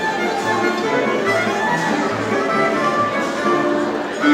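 Two violins playing a melody together live, over an accompaniment with a low bass note repeating about once a second.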